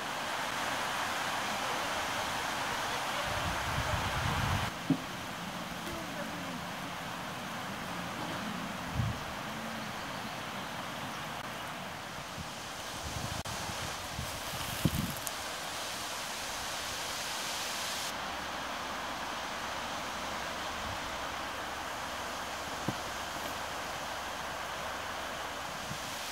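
Outdoor forest ambience: steady wind noise with a few soft bumps from handling the camera. The background changes abruptly about 5 and 18 seconds in.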